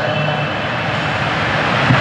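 Steady whooshing room noise with a faint low hum under it, filling a gap in the speech.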